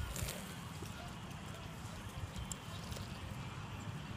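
Faint sounds of children playing in dirt with plastic toy trucks: light scrapes and a few soft clicks over a low steady rumble.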